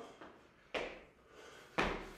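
Feet landing on a rubber gym floor during a step and lateral bound: two sudden thuds, the second, just before the end, deeper and heavier.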